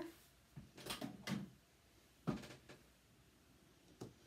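Faint handling noise: a few light knocks and clicks as things are moved and set down on a table. The sharpest knock comes a little past two seconds in.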